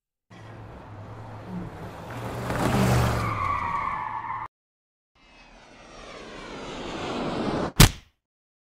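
Sound-effect pass-by of a vehicle: it swells up to a peak about three seconds in, its pitch falling as it goes past, and cuts off abruptly. A second rising whoosh then builds and ends in a sharp click near the end.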